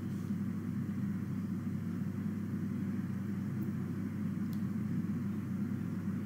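Steady low background hum with no speech, and two faint clicks about midway.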